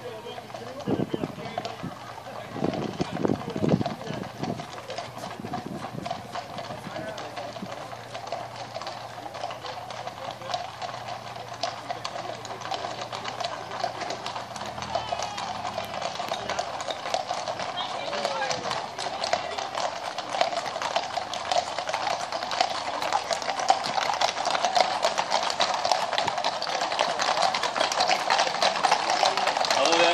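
Hooves of many horses clip-clopping on a tarmac road, a dense patter that grows steadily louder as the mounted column approaches and passes close by, with people's voices mixed in.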